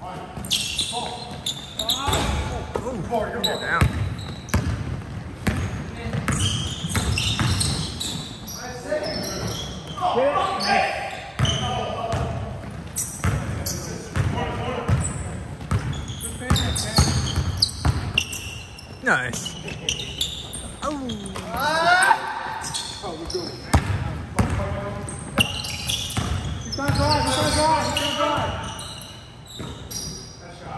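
Basketball bouncing and being dribbled on a hardwood gym floor, as a run of short knocks, with players' voices calling out over it, echoing in a large gym hall.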